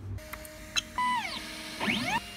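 Ultimaker 3D printer's stepper motors whining as the print head moves at the start of a print: the pitch holds on steady notes, slides down about a second in, and climbs again near the end, with a few light clicks in the first second.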